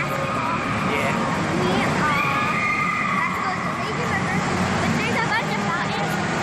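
Loud din of a crowd in an indoor waterpark: many voices at once with children's shrill shouts. One long high cry is held for about a second, starting about two seconds in.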